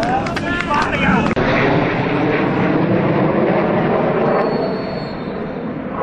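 Players shouting on a football pitch, breaking off suddenly about a second in; then a steady rumble of wind on the microphone with faint distant voices.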